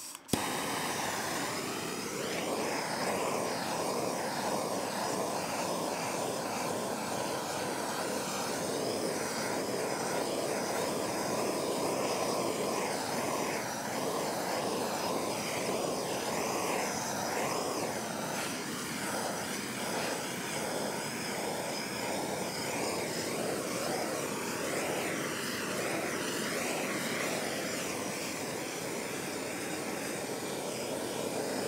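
Handheld gas torch on a yellow Bernzomatic cylinder burning with a steady rushing hiss of flame, its tone wavering slightly as the flame is kept moving over a plastic panel.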